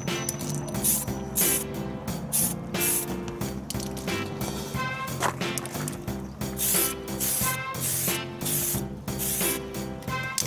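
Aerosol spray can of clear coat hissing in short repeated bursts, about one or two a second, as it is sprayed onto a car's body panel, with background music underneath.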